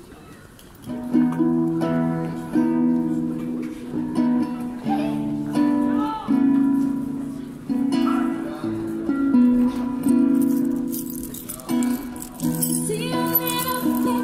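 Amplified street-busker music: a chord intro that starts about a second in, each chord struck and held for a second or so, with a woman's singing voice coming in near the end.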